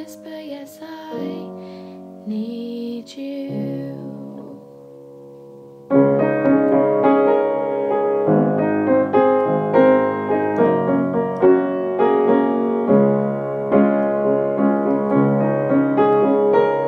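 Piano playing an instrumental passage of a slow ballad. Soft held chords come first; about six seconds in it jumps to louder, fuller chords struck in a steady pulse.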